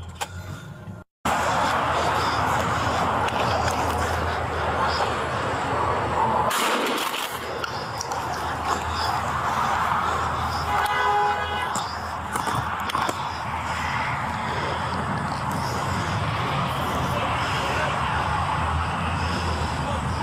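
Steady rustling and wind noise on a body-worn camera's microphone as the officer moves outdoors, with a brief electronic beeping tone about eleven seconds in.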